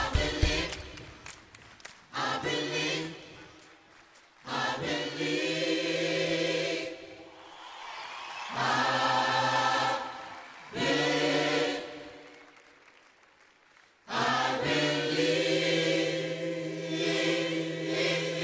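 A large gospel mass choir singing held chords in about five short phrases, each ending in a brief drop-out before the next begins.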